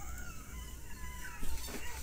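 A man crying, a faint, wavering wail, with short bursts of laughter near the end.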